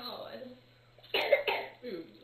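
A person coughing twice in quick succession a little past halfway, a cough from a cold.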